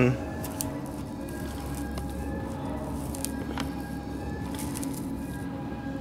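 Faint clicks and light handling noise as a plastic action figure is set into place on a moss-covered diorama base, over a steady low hum.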